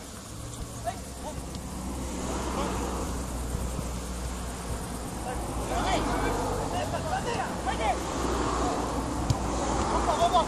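Players shouting and calling out during an outdoor football game, heard from a distance in short scattered calls that gather around the middle and end, over a steady low rumble.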